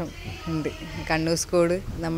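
Speech only: a voice talking into a handheld interview microphone.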